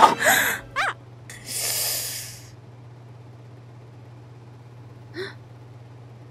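A young boy's non-verbal vocal sounds: a sharp gasp and quick strained breaths in the first second, then a long breath out. There is a short whimper-like sound about five seconds in.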